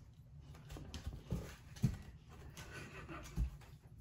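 Quiet breathy huffing from a person, broken by a few short, soft knocks.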